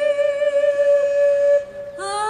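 A woman's singing voice, Ukrainian folk style, holding one long steady high note that breaks off about one and a half seconds in.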